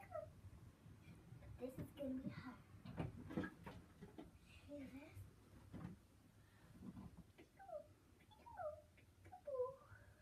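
A child's faint, soft wordless vocal sounds with light rustling, ending in three short falling squeaks.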